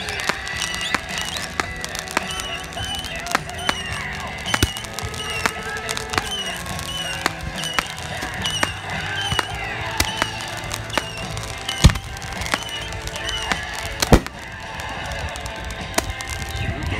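Fireworks crackling and popping with many sharp reports throughout, the two loudest bangs coming about twelve and fourteen seconds in.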